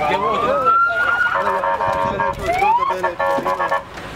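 A vehicle siren wailing, its tone rising in pitch at the start and again in the middle, over shouting voices.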